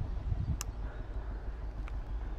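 Low, uneven outdoor rumble, with two faint clicks, one about half a second in and one near the end.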